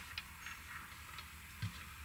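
Faint handling noise of a corded curling iron: a few soft clicks and a light knock near the end over a faint low hum.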